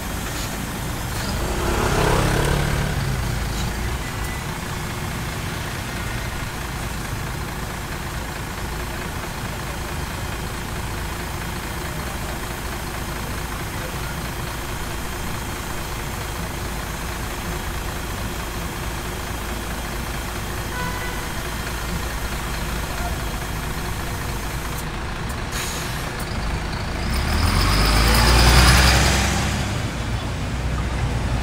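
Slow-moving city buses and cars on a narrow street: a steady low engine rumble, swelling louder as a vehicle passes close by about two seconds in and again near the end.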